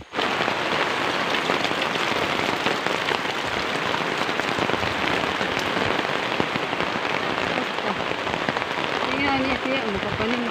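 Loud, steady rain falling on a fabric umbrella held just overhead and on a wet concrete path; it starts abruptly. A voice comes in near the end.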